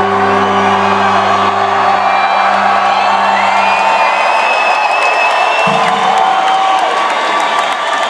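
Loud live rock band heard from the crowd: a sustained low electric guitar and bass chord rings and fades out about halfway through, while a high held guitar note glides up and holds for a couple of seconds. Crowd cheering and whooping runs underneath and takes over near the end.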